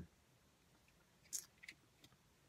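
Near silence broken by two short, sharp mouth clicks about a second and a half in, a third of a second apart: lips smacking on a tobacco pipe's stem while puffing.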